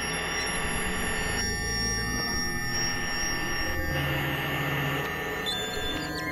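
Layered experimental electronic music: several synthesizer drones and sustained tones held at once over a noisy wash that cuts out and comes back a few times, with a low held note near the end.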